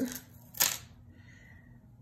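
A single sharp click about half a second in, then faint room tone.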